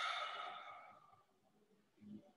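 A man's sigh, a breath let out that is loudest at the start and fades away over about a second.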